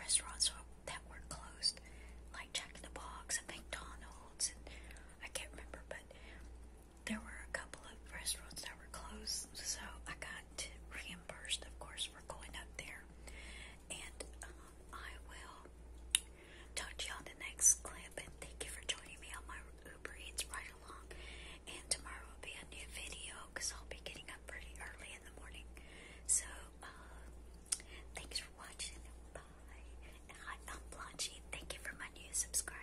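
A woman whispering close to the microphone in soft, unpitched breathy strokes, over a steady low hum.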